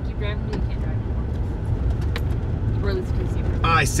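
Steady low rumble of a pickup truck driving on a gravel road, heard from inside the cabin, with a few brief clicks and rattles.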